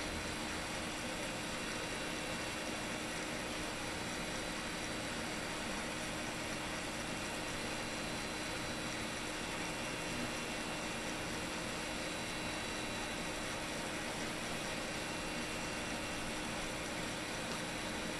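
Steady, even hiss with a faint hum underneath and nothing else happening: the background noise of the recording.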